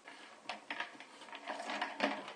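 A thin clear plastic bottle and black poly tubing being handled: irregular crinkles, rubs and light taps of plastic, the tube sliding through the bottle's holes.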